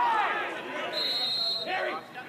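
Men's voices speaking or calling out, not transcribed, over field sound. A brief high steady tone comes in about a second in and lasts about half a second.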